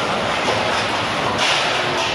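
Loud, steady clatter and din of steel dishes and vessels being handled and washed in a communal kitchen.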